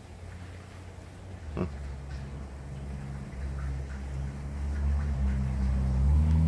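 A low, steady hum with a few even pitches, growing steadily louder.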